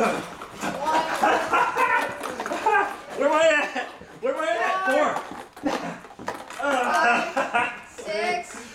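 Excited human voices shouting almost without a break. The pitch rises and falls loudly, and the words are not clear.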